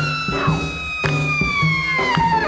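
Instrumental break of a 1950s jump-blues record: a saxophone holds one long note that slides slowly down in pitch, over a walking bass line and drum hits.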